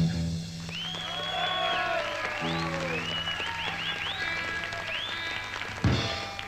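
A live punk rock band's last chord rings out and gives way to audience applause with many high rising-and-falling whistles, while an amplified guitar and bass hold low notes between songs. One sharp thump near the end.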